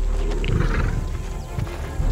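A lion vocalises briefly about half a second in, over a steady background music bed.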